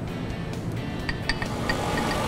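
Background music over a Globe stand mixer motor running and getting louder as it speeds up, with a few light metallic clinks at the steel bowl about a second in.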